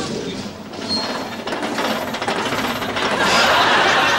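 A dense, rapid rattling clatter that grows louder over the last second.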